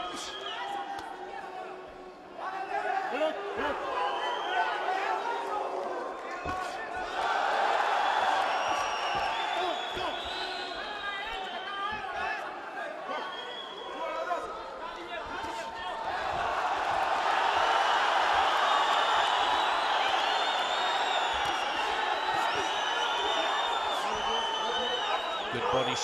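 Arena crowd shouting and cheering at a boxing bout, swelling loudly twice, from about seven seconds in and again from about sixteen seconds on. Scattered sharp thuds of punches landing and feet on the canvas come through the noise.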